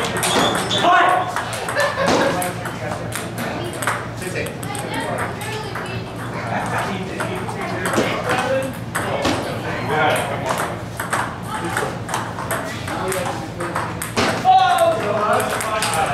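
Table tennis balls clicking off paddles and tables in rallies, a quick run of sharp ticks with play going on at several tables at once. Voices are heard among the clicks.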